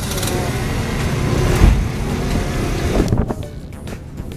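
Moped engines running in a crowd of scooters and bicycles rolling off a ferry, over a steady low rumble. There is a thump about one and a half seconds in, and the noise drops off after about three seconds.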